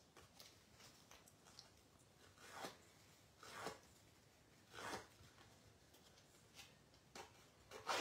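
Edges of a piece of cardstock being scraped with a handheld paper-distressing tool, a handful of separate faint scraping strokes.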